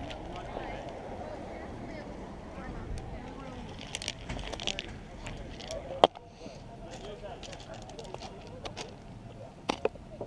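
A putter striking a mini-golf ball with one sharp click about six seconds in, over faint murmur of distant voices; a couple of softer clicks follow near the end as the ball rolls toward the hole.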